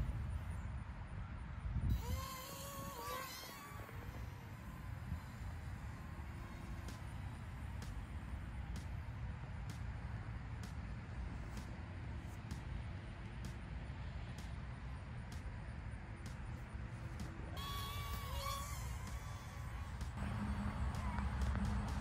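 Open-air background sound: a steady low rumble, with two brief wavering distant calls, about two seconds in and again near the end.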